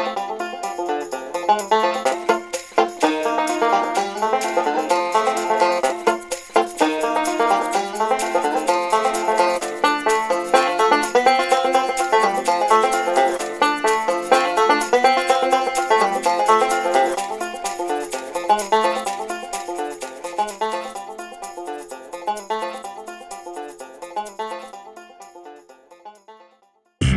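Instrumental background music of rapid plucked-string notes in a bluegrass style, fading out over the last several seconds.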